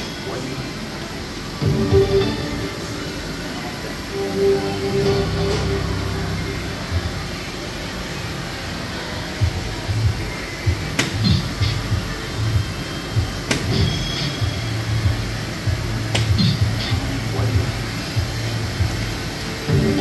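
Soft-tip darts striking a DARTSLIVE 3 electronic dartboard, several sharp hits in the latter half, each followed by the machine's short electronic sound effect, over background music and voices.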